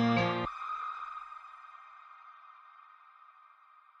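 Background music: an acoustic guitar song ends abruptly about half a second in, leaving a thin high ringing tone that fades away.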